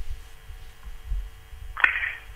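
A pause in the talk: low room rumble with a faint steady hum from the studio line, and a voice starting briefly near the end.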